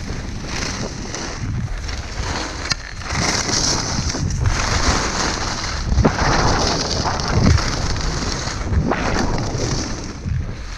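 Skis carving down a groomed run: edges scraping and hissing on hard-packed snow, swelling with each turn about every second and a half, over a loud rumble of wind buffeting the microphone.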